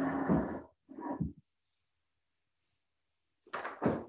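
A woman's speaking voice trailing off, then a short spoken sound about a second in, followed by about two seconds of near silence before she starts speaking again near the end.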